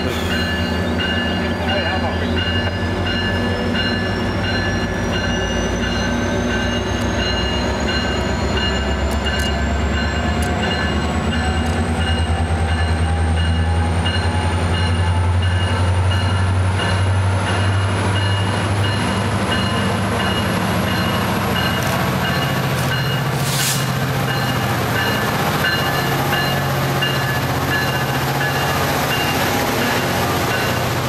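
Metrolink commuter train pulled by a diesel locomotive rolling through the station: a steady low engine rumble with rolling car noise. A repeated ringing tone sounds through it, and a thin whine rises slowly in pitch.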